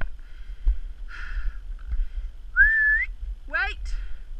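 A single short whistled note that rises in pitch, about two-thirds of the way in, then a brief pitched call that sweeps up and back down near the end. Under both are breathy rushes about once a second and a low rumble of movement on the microphone.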